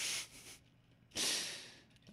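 A man's breathing close to the microphone: two breaths, the second about a second in and the louder, each under a second long.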